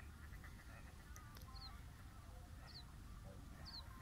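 Faint bird calls: short, high, falling double chirps repeating about once a second, with fainter lower calls, over a steady low rumble.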